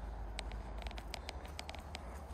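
Footsteps crunching through dry grass and dead leaves: a quick run of light crackles and clicks, over a low steady rumble.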